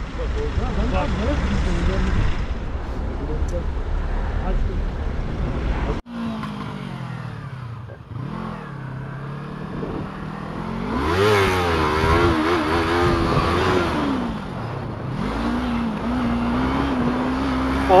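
Noisy rumble at first, then a sport motorcycle's engine riding through city traffic. About six seconds in, its note drops, climbs sharply with the throttle, wavers up and down, falls back and settles into a steady drone near the end.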